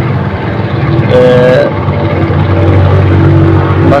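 A steady low rumble with an even hum, under a man's single drawn-out hesitation sound, 'eh...', about a second in.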